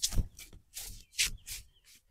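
Hands rubbing and stroking a person's knee and shin through cloth trousers during a massage, heard as a series of short, separate rubbing strokes.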